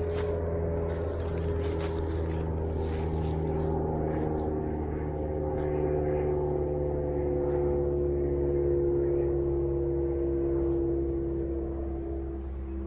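A steady engine drone whose pitch falls slowly and evenly throughout. In the first few seconds, dry fallen leaves rustle underfoot.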